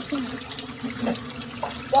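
Water running from a tap into a sink, a steady splashing rush, as toothpaste is spat out and rinsed away after brushing.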